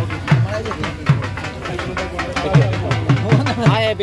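Dhol drumming: deep, uneven bass strokes mixed with sharp stick taps, with a voice calling over it near the end.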